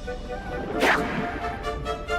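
Background music with a single quick swoosh effect, sweeping sharply down in pitch a little under a second in.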